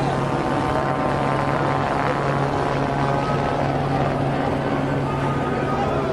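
A steady low machine drone over the noise of a large crowd, with scattered voices.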